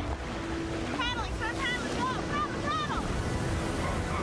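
Ocean surf and wind over open water, a steady wash of noise. From about a second in, a high-pitched voice shouts out in short rising-and-falling calls for about two seconds.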